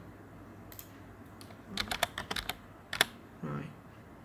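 Computer keyboard keys being typed in a few short bursts of keystrokes, with one sharper single click about three seconds in.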